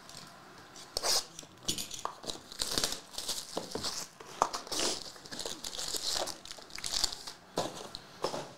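Plastic wrap crinkling and tearing off a trading card hobby box, then the box being opened and its foil packs handled. Irregular crackling and rustling starts about a second in, with small clicks.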